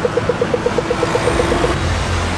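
Rapid electronic beeping, about eight short beeps a second over a steady tone, which stops shortly before the end.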